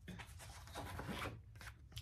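Faint rustling and rubbing of a fabric project bag and paper as a cross-stitch pattern is pulled out, in short scratchy strokes that ease off near the end.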